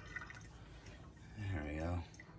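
Water dripping from the just-shut tap into a stainless-steel sink, a few faint plinks in the first half-second. Near the end, a man's low voice makes a drawn-out sound without clear words.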